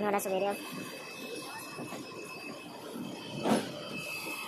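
Running noise of an Indian Railways passenger train heard from inside the coach, with a thin steady high whine. A brief voice sounds at the start, and one loud knock comes about three and a half seconds in.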